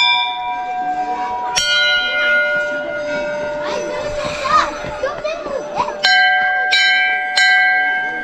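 Large hanging brass temple bells being struck, each strike ringing on in long, clear tones: one right at the start, another about a second and a half in at a lower pitch, then three strikes in quick succession near the end.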